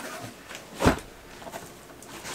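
A single dull thump a little under a second in, from a cardboard shipping box being set down on the floor.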